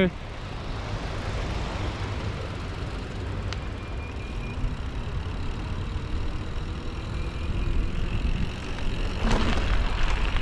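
Wind rushing and rumbling over the microphone of a camera on a moving mountain bike, with the rolling noise of the ride; the rush swells louder near the end.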